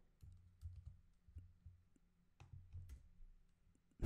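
Near silence with a handful of faint, short clicks and soft low taps spread through it: a computer being worked by hand, with clicks and drags on the volume line of an audio editor.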